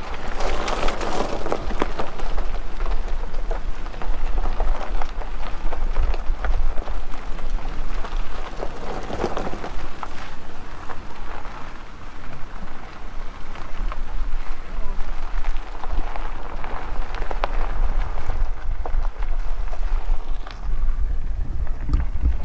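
Vehicle driving along a gravel dirt road: a steady low rumble from the road, with the constant crunch and ticking of gravel under the tyres.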